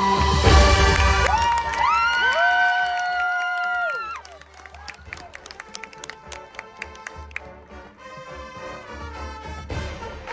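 High school marching band playing: its horns slide up together into a loud held chord that cuts off about four seconds in, followed by a quieter passage of light, sharp percussion taps.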